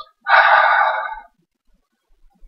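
A man's short, high, breathy laugh, loud at first and fading out over about a second.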